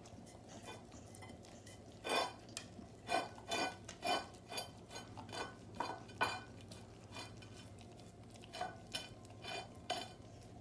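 A dog licking an empty ceramic plate on a tile floor, pushing it around so the plate knocks and clinks against the tiles in a string of short, ringing knocks. The knocks come thickly from about two seconds in, pause, then return a few times near the end.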